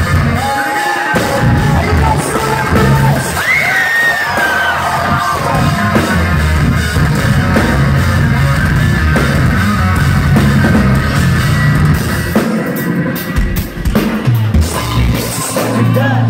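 A live metalcore band playing loud and distorted, heard from the crowd: pounding drum kit and heavy electric guitars in a club. The low end thins out briefly near the end before a sustained low note comes back in.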